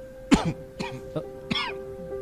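An elderly man's coughing fit at the table: several harsh coughs about half a second apart. Background music with steady held notes runs underneath.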